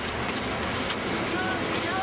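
Steady outdoor background noise, with a few faint, short sounds like distant voices.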